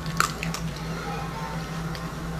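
A small dog eating from its food bowl, a few sharp clicks and smacks in the first half second, over a steady low hum.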